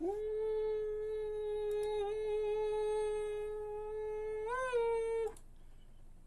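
A person humming one long, steady, fairly high note that lifts briefly near the end and stops about five seconds in.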